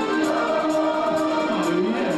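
Live rock band music: a male lead vocalist singing a held vocal line over sustained keyboard chords, his pitch dipping and rising again near the end, with regular high ticks from the band's rhythm.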